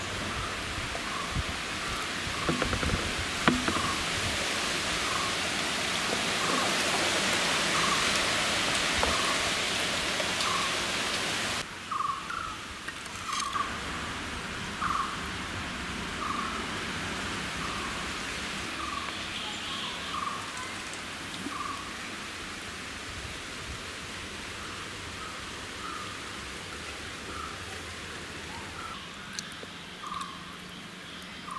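A steady hiss that cuts off abruptly about twelve seconds in, over a bird's short high chirp repeated about every 0.7 seconds throughout.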